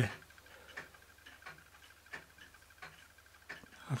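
Märklin toy donkey steam engine running weakly on compressed air, giving a faint, even ticking about three times a second as the piston works. Its piston and cylinder are worn, so most of the air leaks past the piston.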